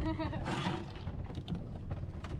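Low wind-and-boat rumble on the microphone, with a few short knocks as a mutton snapper is handled and pressed flat on the fibreglass deck against a measuring ruler.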